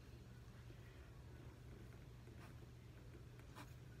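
Near silence: a low steady hum, with a couple of faint clicks as a liquid eyeliner pen is uncapped and handled.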